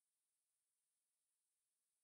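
Near silence: no audible sound.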